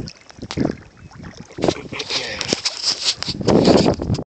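Water sloshing and splashing around a landing net as it is handled beside a boat, with irregular knocks and a rougher, louder stretch of splashing from about halfway through. Wind buffets the phone's microphone.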